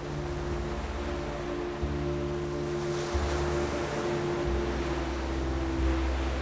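Steady wash of ocean surf with wind, over a soft music bed of held notes.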